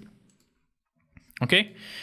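Two quick, quiet computer mouse clicks a little over a second in, just before a spoken "okay".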